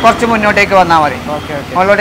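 A person talking throughout, with road traffic going by underneath.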